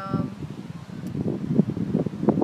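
Wind buffeting the microphone in uneven low gusts, with no steady tone.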